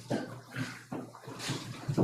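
Irregular shuffling and scraping noises in a meeting room, several per second, as people sit back down after standing.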